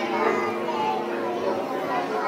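Children's voices chattering and playing, a sampled recording laid into a downtempo psybient track, over a steady low held tone.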